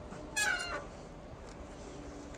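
A single short animal call, under half a second, falling slightly in pitch, over steady outdoor background noise.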